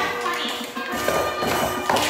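Recorded children's music playing while a group of young children tap small hand percussion instruments along with its beat.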